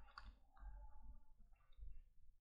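Near silence with faint clicks and light scratching of a stylus writing on a tablet screen.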